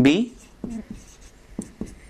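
Marker writing on a whiteboard: a few short squeaks and taps of the tip against the board.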